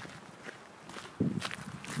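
Footsteps of a person walking, a few separate steps that get louder a little over a second in.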